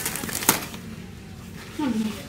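A single sharp click about half a second in, then quiet room tone; a man's voice starts near the end.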